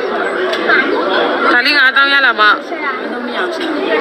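Chatter of several people talking at once, with one voice standing out in the middle.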